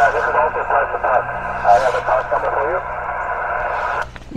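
A distant station's reply coming over a ham radio's speaker on HF single sideband. The speech is squeezed into a narrow, tinny band and sits in a steady hiss of static.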